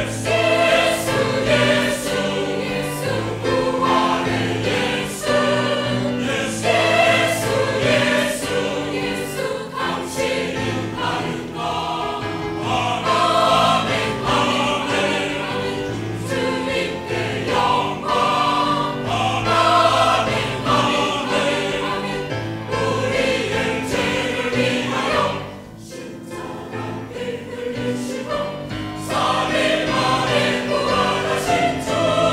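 Mixed choir of men and women singing a sustained hymn-like chorus in Korean, with a brief drop in loudness about twenty-six seconds in.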